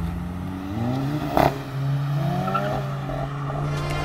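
Volkswagen Golf GTI's turbocharged four-cylinder engine accelerating away, its note rising twice as it pulls off and recedes. A short sharp crack comes about a second and a half in.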